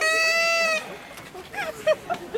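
A person's high-pitched, drawn-out laughing squeal, one held note of almost a second with a slight fall in pitch, then fainter voices.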